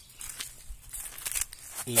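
Dry leaf litter and twigs rustling and crackling in short irregular bursts, with a man's voice starting right at the end.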